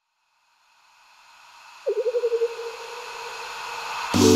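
Background music changing tracks: a moment of silence, then a swelling hiss with a brief fast-warbling tone that fades into it, the electronic intro leading into the next track.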